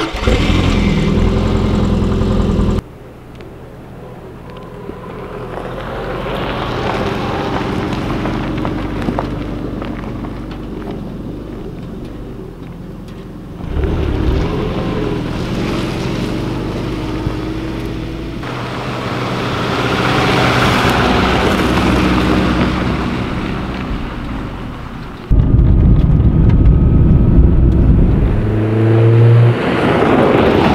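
Subaru Forester's flat-four engine in a string of short cuts: running steadily close to the exhaust, then the car driving past on gravel, its engine and tyre noise swelling and fading. Near the end the engine is loud again.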